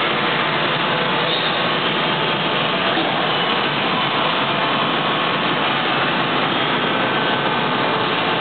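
Haeusler plate bending rolls running, a steady, unchanging machine noise with no starts or stops.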